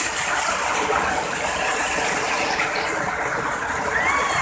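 Steady rush of water from a small waterfall pouring and splashing over rocks.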